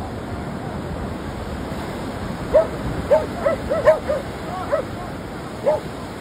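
Surf breaking and washing on the beach. From about halfway through, a dog gives a run of about eight short barks, several in quick succession.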